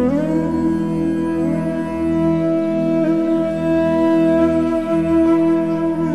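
Relaxation music: an Indian flute slides up into a long held note, with another slide near the end, over a steady low drone.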